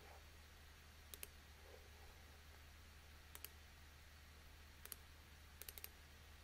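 Faint computer mouse clicks while a line is drawn in charting software: a pair about a second in, another pair a little past the middle, a single click, then a quick run of three or four near the end, over a steady low hum.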